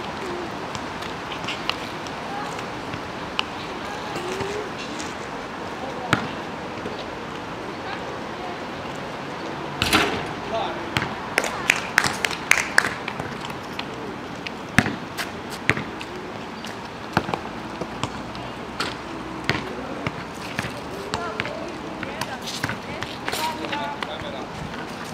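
Basketball bouncing on an asphalt court: scattered dribbles and thuds, with a run of quick bounces about ten seconds in.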